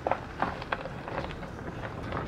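Low steady rumble of a car driving, heard from inside the cabin, with a few faint short ticks.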